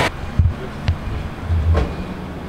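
Flatbed tow truck hauling a car and pulling away: a low engine rumble with three low thuds and clanks from the loaded bed, two in the first second and one near the end.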